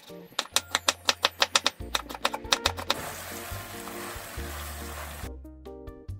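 A kitchen knife slicing bell peppers on a wooden cutting board, in a quick, even run of chops about six a second, over background music. The chopping stops about three seconds in, followed by a steady hiss for about two seconds.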